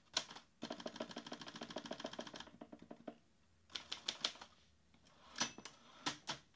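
Manual typewriter typing: a quick, steady run of keystrokes for about two seconds, then a pause, a shorter cluster of strokes, and a few sharp strokes near the end.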